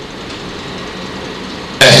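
Steady low hum and hiss of a public-address sound system in a pause between words. A man's loud amplified voice cuts in abruptly near the end.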